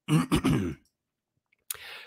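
A man clearing his throat once, close to a microphone, in the first second.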